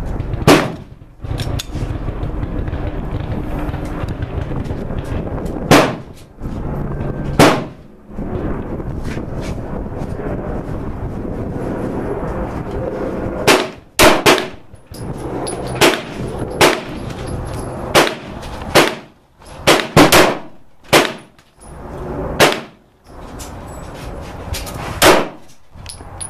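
Sarsılmaz SAR9 METE 9mm semi-automatic pistol being fired, single sharp shots. Three spaced shots come in the first eight seconds. After a pause of about six seconds, a quicker string of about a dozen shots follows, some in quick pairs.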